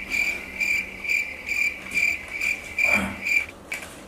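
Cricket chirping in an even pulse, about two chirps a second, starting abruptly and stopping shortly before the end, with a short soft knock about three seconds in.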